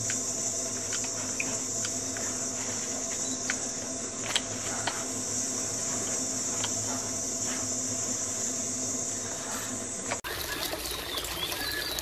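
Steady high-pitched insect drone with a low hum beneath it and a few faint clicks and chirps. About ten seconds in it cuts off abruptly and gives way to trickling water.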